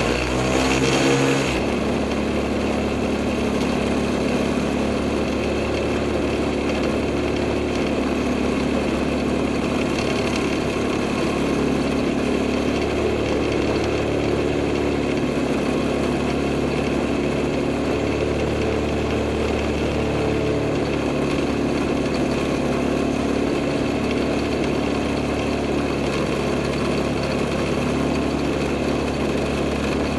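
Rotax 503 two-cylinder two-stroke engine of an Earthstar Thunder Gull ultralight, throttled back about a second and a half in, then idling steadily to cool down before shutdown.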